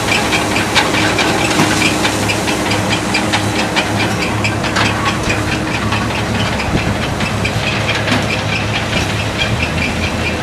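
Convey-All TC1020 portable belt conveyor running, driven by its three-phase electric motor: a steady mechanical hiss and hum with a rapid, irregular rattle of clicks from the belt and drive.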